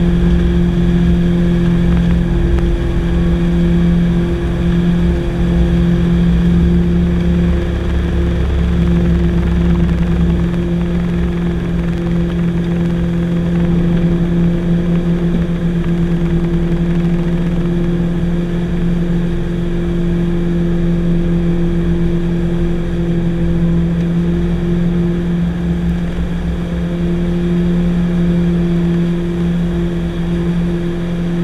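Twin piston engines of a Piper Navajo at takeoff power, heard inside the cockpit, with a steady propeller drone of strong low tones. A low runway rumble drops away about ten seconds in as the aircraft lifts off and climbs.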